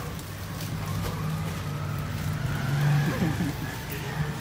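A steady low hum, with people's voices faintly in the background.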